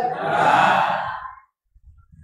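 A man's long breathy sigh, fading out after about a second and a half into silence.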